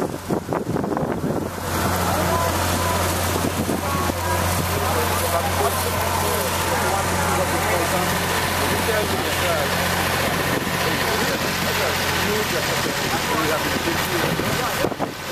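Engine of a sugar cane loading elevator running steadily, a low even hum that sets in about a second and a half in.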